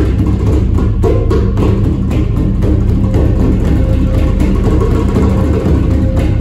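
Hand-drumming ensemble: a djembe and a large hanging barrel drum struck by hand in a dense, continuous rhythm, with a handpan's sustained notes ringing over the drums.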